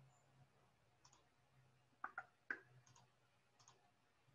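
A few faint computer mouse clicks over near silence: one about a second in, a pair just after two seconds, the loudest about half a second later, then two more spread toward the end.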